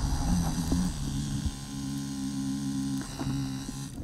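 KTM Freeride 350 dirt bike's single-cylinder four-stroke engine running at a steady idle hum, which stops abruptly just before the end.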